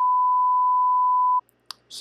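Colour-bars test tone: a single steady high-pitched beep that cuts off suddenly after about a second and a half.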